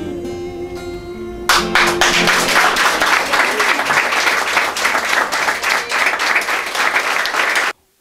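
The last held note of a song with acoustic guitar rings out, then about a second and a half in a roomful of people breaks into applause. The clapping stops abruptly near the end.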